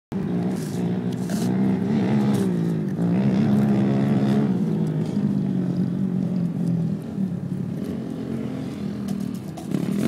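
Quad bike (ATV) engines running and revving, the pitch rising and falling repeatedly as the riders throttle on and off.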